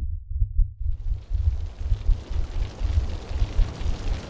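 A deep, pulsing rumble, with a rushing hiss swelling in about a second in: a dramatic build-up sound effect.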